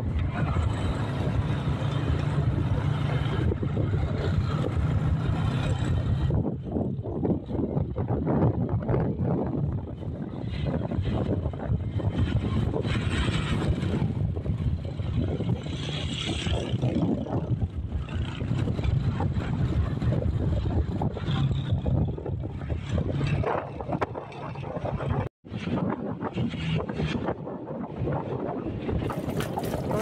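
A moving vehicle's engine and road noise, with wind buffeting the microphone. The sound drops out for a moment about five seconds before the end.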